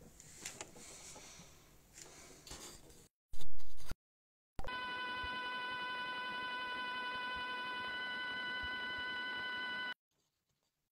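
Faint room noise with a few small clicks, then a brief loud burst of noise about three seconds in. After a short dead gap, a steady electronic buzz with a high whine sets in and runs unchanged until it cuts off suddenly.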